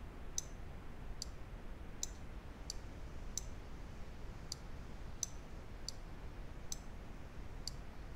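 Computer mouse button clicking about ten times at an even pace, roughly one click every three-quarters of a second, each click placing a point of a mask outline.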